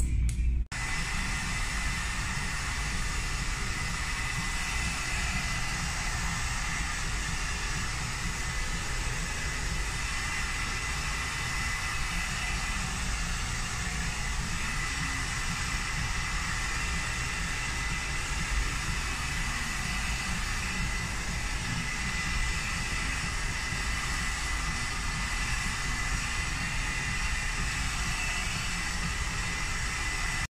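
Handheld hair dryer running steadily: a constant rush of air with a thin high whine. It starts just under a second in.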